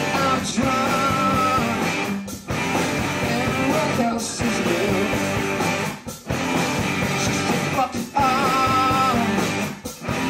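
Live rock band playing loud: electric guitars and drums with a male voice singing. The music drops out briefly about every two seconds.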